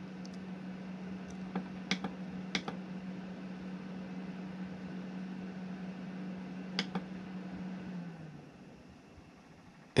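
AC Infinity cabinet exhaust fan running with a steady hum, which winds down and stops about eight seconds in: the controller's trigger temperature has been raised past the probe's 65° reading, so the fan shuts off. Several light clicks of the controller's buttons being pressed.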